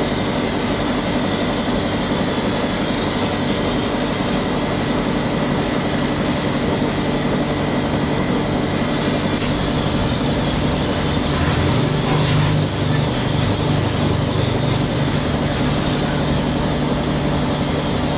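High-pressure washer running: a steady pump drone under the hiss of the water jet spraying onto a scooter's bodywork and the wet floor.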